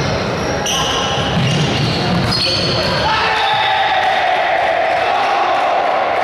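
Spectators' voices and shouts echoing in a large sports hall during a volleyball rally, with thumps of the ball. A long held shout from the crowd runs through the second half.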